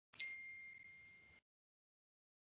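A single electronic notification ding with a sharp start, ringing on one clear tone for about a second before cutting off.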